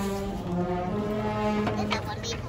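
Procession brass band playing a funeral march, with long held brass notes over a steady low bass line.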